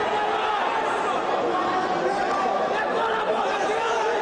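Crowd of spectators talking and calling out all at once: a steady din of many overlapping voices, with no single voice standing clear.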